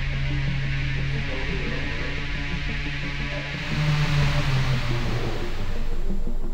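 Electronic background music over a steady rushing hiss from an electric motor spinning a large three-blade propeller on a thrust test stand.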